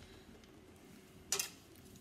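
A single short metallic clatter a little past halfway: a palette knife picked up off a stainless steel worktop.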